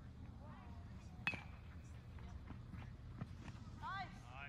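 A single sharp crack with a brief metallic ring, about a second in, like a baseball struck by a metal bat at the far end of the field. Faint voices carry across the open field.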